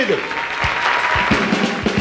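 Audience applauding as a band strikes up the opening of a song, with low drum beats coming in about halfway through.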